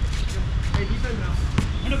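A basketball bouncing a few times on an outdoor hard court as it is dribbled, with players shouting between the bounces and a steady low rumble underneath.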